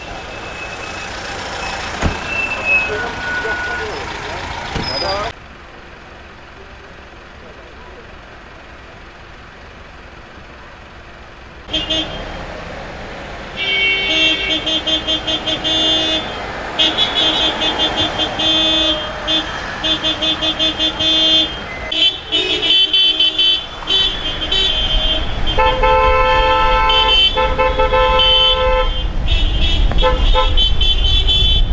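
Car horns honking repeatedly from a slow convoy of cars in celebration, several horns of different pitch overlapping in short rhythmic blasts. The honking starts about halfway through and grows denser toward the end; before it there are voices and idling traffic.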